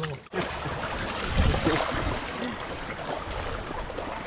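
Shallow seawater splashing and churning around a fishing net as it is hauled in, with voices faintly underneath.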